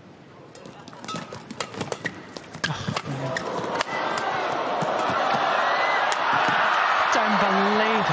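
A badminton rally: sharp racket-on-shuttlecock hits and shoe squeaks on the court, with the arena crowd's noise rising from about four seconds in and staying loud. A voice is heard near the end.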